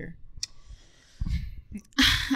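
A few sharp clicks, one about half a second in and a few small ones near the end, with a short low rustle or breath into a close microphone between them.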